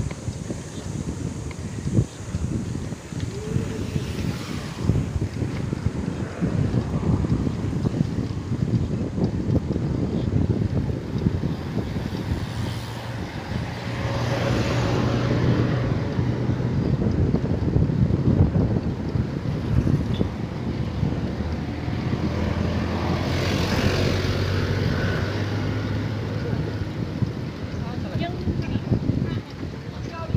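Wind buffeting the microphone of a camera riding on a moving road bike, a steady gusty rumble. In the second half a motor vehicle's engine runs close by.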